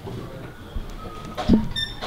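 A single sharp knock about a second and a half in, followed at once by a brief high-pitched tone, over quiet background sound.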